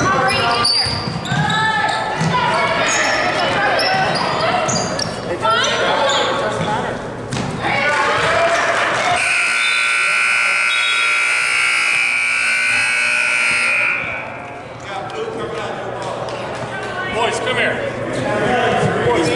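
Gym scoreboard horn sounding one steady, buzzing electronic tone for about five seconds as the game clock runs out. Before it, voices call out across the hall and a basketball bounces on the hardwood floor.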